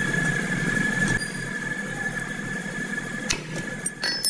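Workshop machinery running with a steady high whine and a low rumble that falls away about a second in, then a few sharp metallic clinks near the end as the spanner and hub nut are worked on the drum-brake hub.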